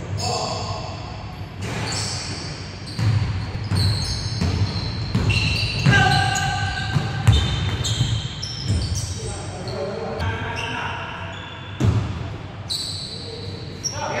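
A basketball bouncing on a hardwood gym court, with repeated dull thumps. Sneakers squeak in short high chirps and players call out, all ringing in a large hall.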